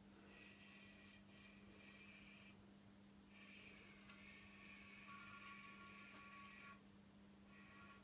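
Near silence: room tone with a faint steady hum and a faint high hiss that comes and goes.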